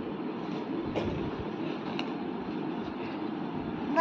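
Steady low background hum with a few faint ticks.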